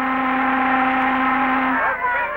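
A ship's whistle sounding one long, steady blast that cuts off near the end, on an early sound-film soundtrack.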